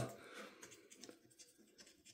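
Faint, irregular scraping of a coin's edge rubbing the coating off a scratch-off lottery ticket.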